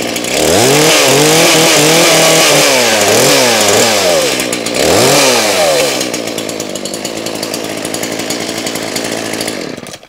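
Shindaiwa 451S two-stroke chainsaw running just after a choke start: revved up and down several times, then settling to a steadier, lower idle before it is shut off near the end.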